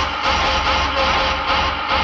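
Industrial techno track: a dense, distorted wall of sound over a steady deep bass, playing at a constant loud level.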